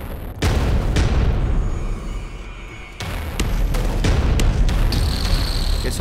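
Heavyocity Gravity 'Breakout' cinematic hits played from a keyboard. The first heavy booming impact comes just under half a second in and the second about three seconds in. Each is a layered sound combining impact, sub-bass and tail, with deep low end and a long decaying tail.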